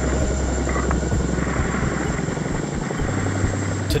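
Steady loud wind rush and buffeting on the IXV test vehicle's onboard camera microphone as the craft descends under its parachute, with a deep rumble that shifts slightly higher about three seconds in and a thin high whine underneath.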